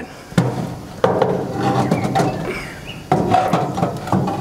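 Baking paper being slid across a gas grill's metal upper rack: paper rustling and scraping over the bars, with a few sharp knocks.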